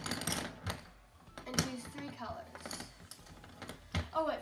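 Colored pencils clattering against each other and against a hard plastic bin lid as they are shuffled around by hand, a quick run of rattling clicks at the start and a single sharper click about a second and a half in.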